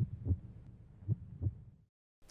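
Three soft, low thumps over a low hum, the last two close together, fading to silence near the end: the dying tail of the intro jingle's sound design after its guitar sting.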